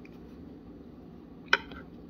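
Quiet room tone with a steady low hum, broken by one sharp click about one and a half seconds in.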